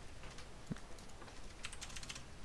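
A few faint clicks from a computer keyboard and mouse while a document is being edited, with a quick run of several clicks near the end.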